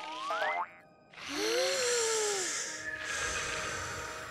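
Cartoon sound effects over music: a rising glide as the mushroom seats shoot up, ending about half a second in, then a short gap and a hissing whoosh with a low tone that rises and falls.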